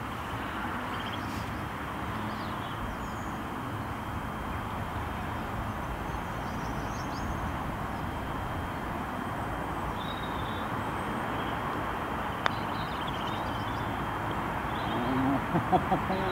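Steady outdoor background rush with a single sharp click about three-quarters of the way through: a putter striking a golf ball from far across the green. A few faint bird chirps are heard above the background.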